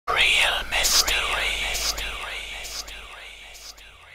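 An intro sound effect: a sweeping hiss that starts suddenly and repeats about every 0.8 s, dying away like a fading echo.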